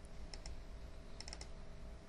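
Faint clicks from a computer keyboard and mouse: a couple of single clicks early on, then a quick run of about four clicks a little past a second in.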